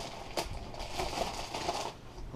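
Clear plastic bag crinkling and rustling as hands pull it open, with one sharper crackle about half a second in.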